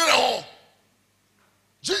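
A man's voice ending a short voiced utterance in the first half second, then a pause of over a second before he starts speaking again near the end.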